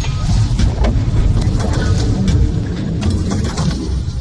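Cinematic intro music and sound effects for an animated title: a loud, dense rumble with sharp hits through it, starting to fade at the end.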